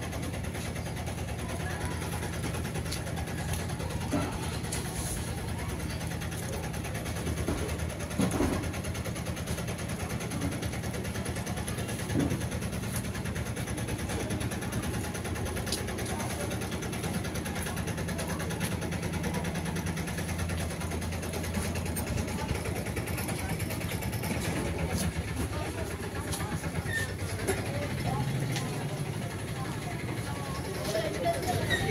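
Indistinct background chatter of voices over a steady low rumble, with a few brief knocks.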